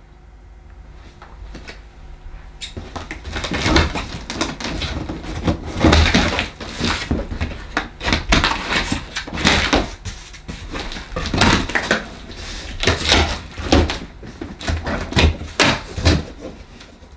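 Cardboard box being opened: packing tape being cut and the flaps worked loose, a long run of irregular scrapes, rustles and knocks of cardboard that starts about three seconds in.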